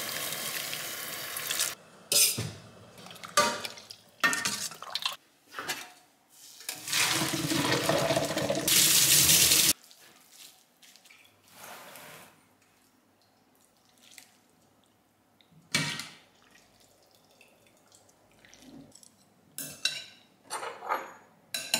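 Water poured into a stainless steel saucepan over dry rice noodles for about two seconds, followed by scattered knocks of the pot. About seven seconds in, a louder pour of water lasts about three seconds as the noodles are drained, then it is quiet apart from a few clinks of metal on dishes.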